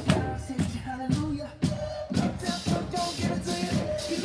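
Upbeat music with drums, a strong bass and a melody line, played by a parade drum line performing a pop-funk number.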